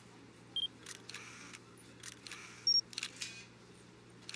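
Camera sounds: several quiet shutter-like clicks and two short electronic beeps. The second beep, near three seconds in, is higher and louder than the first, and a faint low hum runs underneath.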